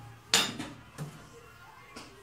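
A removed engine cylinder sleeve set down on a concrete floor: one loud metal clank with brief ringing, then a lighter knock about a second later.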